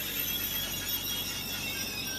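Regional passenger train rolling along a station platform, with a steady high-pitched metallic squeal over the low rumble of its running.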